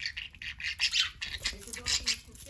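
Budgerigars chirping and chattering: a quick run of short, high chirps.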